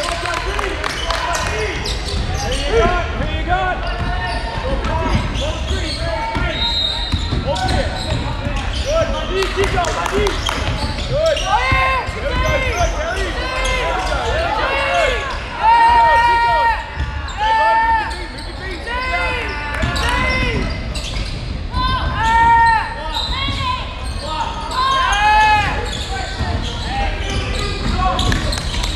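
Indoor basketball game echoing in a large hall: a basketball bouncing on the hardwood court, with many short high sneaker squeaks on the floor that grow busier and louder in the second half, over voices.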